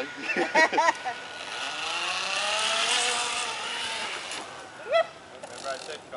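Zip line trolley pulleys running along the steel cable: a whirring whine that rises in pitch as the rider speeds up and then falls away, lasting about three seconds.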